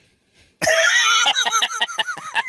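A man laughing hard at his own joke: a loud first burst of laughter about half a second in, then rapid short pulses of laughing.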